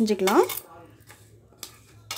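Sweet corn kernels being mixed by hand with rice flour and corn flour in a steel bowl: faint rustling of kernels and flour, with a light metallic clink about one and a half seconds in.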